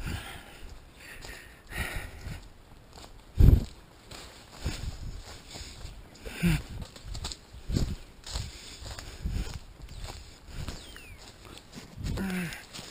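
Footsteps of a person walking over a leaf-covered forest floor, irregular steps about one a second, with one heavier thud about three and a half seconds in.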